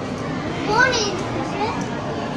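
Background chatter of voices, with a child's high voice calling out briefly about a second in.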